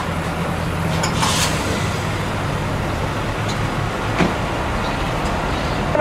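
Vehicle engines running with road traffic noise: a steady low hum under an even background rush, with a couple of brief knocks about a second in and about four seconds in.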